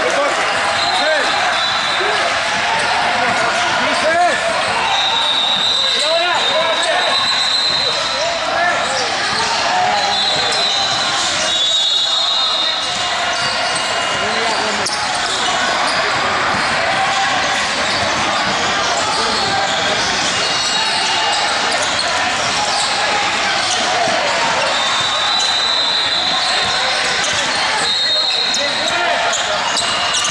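Indoor basketball gym ambience in a large sports hall: many voices chattering at once, basketballs bouncing, and high squeaks that come and go.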